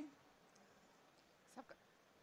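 Near silence: room tone, broken once about one and a half seconds in by a brief, faint sound from a person's voice.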